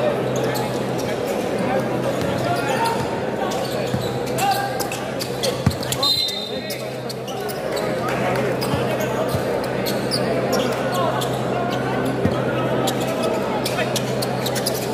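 Crowd chatter filling a large gym during a basketball game, with a basketball bouncing on the hardwood court in repeated knocks. A steady low hum runs underneath, and a brief high tone sounds about six seconds in.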